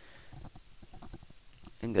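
Faint, irregular crackling ticks and low rumbling hiss from a poor-quality computer microphone, with a man's voice starting near the end.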